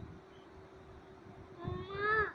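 A single meow near the end, one call that rises and then falls in pitch.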